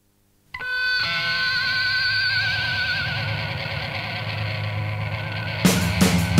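Opening of a rock track: about half a second in, a sustained chord with a wavering, vibrato-like effect rings out and holds, and drums come in with sharp, regular hits near the end.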